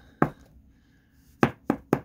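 A few sharp plastic clicks and taps from a trading card in a hard plastic top-loader being handled: one near the start, then three in quick succession near the end.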